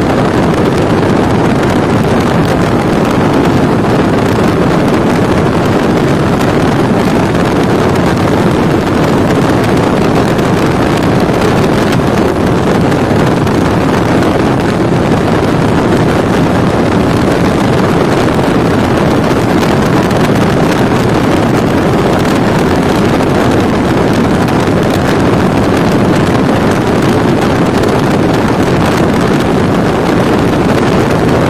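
Cruiser motorcycle ridden at steady road speed: the engine running and wind rushing over the microphone make a loud, even noise with no change in pitch.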